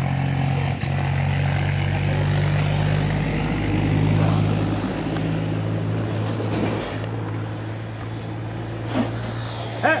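An engine running steadily at idle, a low even hum, easing off slightly after about seven seconds. A man shouts "Hey!" right at the end.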